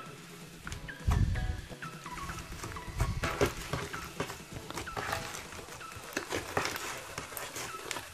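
Glossy black slime being pulled, pressed and balled up by hand: a run of small sticky clicks, pops and crackles, with dull low thumps about a second and three seconds in.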